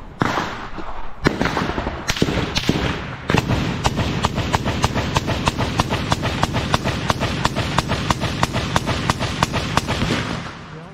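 Gunfire: a few single shots in the first three seconds, then a long burst of rapid automatic fire, about five shots a second, evenly spaced.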